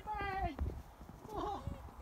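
A man's voice: a drawn-out, wavering "oh" at the start, then a short second exclamation about a second and a half in, with low thuds beneath.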